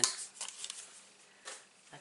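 Cardstock paper being handled: a few short, dry crackles and rustles over the first second, and one more about one and a half seconds in, as die-cut paper scraps are gathered up.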